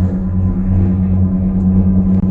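Steady low hum of a gondola cabin in motion, heard from inside the cabin.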